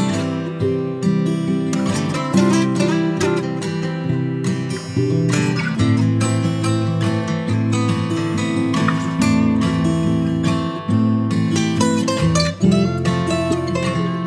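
Background music led by acoustic guitar, a steady run of plucked and strummed notes.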